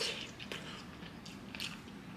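A person chewing food close to the microphone, with a few soft, short mouth sounds.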